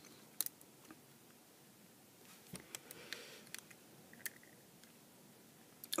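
Faint scattered clicks and rubbing of a translucent plastic LED lamp cover being twisted and pried by hand. The glued-on cover holds fast and does not come apart.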